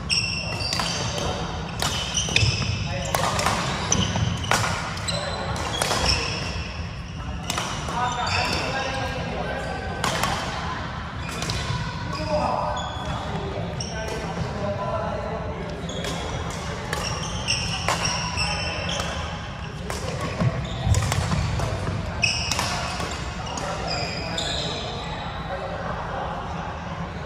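Badminton rally: rackets striking the shuttlecock in repeated sharp cracks, with brief high-pitched squeaks from shoes on the wooden court, echoing in a large hall.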